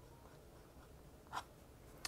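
Faint scratching of a Lamy Studio fountain pen nib writing across paper, with one brief louder stroke about a second and a half in.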